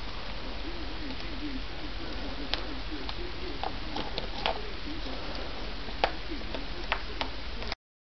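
Hands working carbon-fibre vinyl wrap onto a small plastic trim piece: scattered sharp clicks and taps of the plastic and film being handled, over a steady background hiss. The sound cuts off abruptly near the end.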